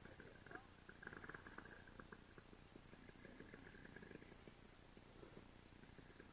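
Near silence: faint rustling with a few light clicks, stronger about a second in.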